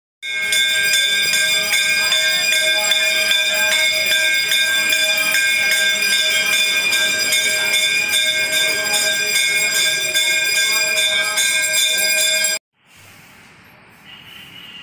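Temple bells ringing continuously, struck rapidly so the strikes overlap into one steady metallic ring, cutting off suddenly near the end.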